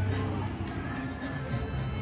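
Slot machine's electronic music and tones playing over the general din of a casino floor.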